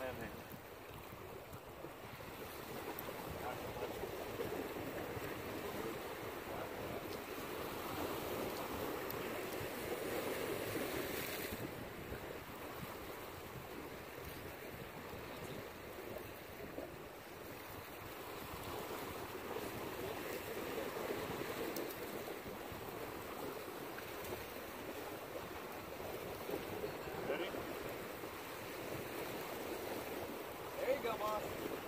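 Wind buffeting the microphone over waves washing against jetty rocks, the noise swelling and easing every several seconds, with a short sharper hiss a little after the middle.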